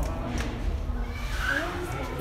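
Indistinct voices of people talking close by, with a short higher-pitched rising voice sound about one and a half seconds in, over a low rumble.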